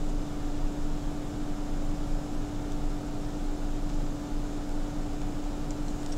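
Steady room hum with one constant low tone under a hiss, machine-like and unchanging, with a couple of faint ticks near the end.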